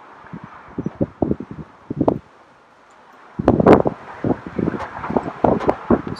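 Rustling and knocking from the handheld camera being moved, with wind on its microphone. It comes in two irregular bursts with a short lull between them, and the second burst is the louder.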